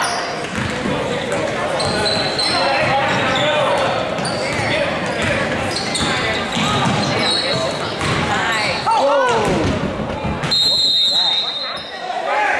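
Basketball game in a school gym: the ball bouncing on the hardwood floor, sneakers squeaking, and players' and spectators' voices echoing in the hall. Near the end a referee's whistle blows one long blast, stopping play.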